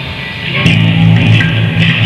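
Heavy metal band playing live: electric guitar and bass guitar, quieter at first, then the band comes in louder with a sharp hit about two-thirds of a second in and held low bass notes.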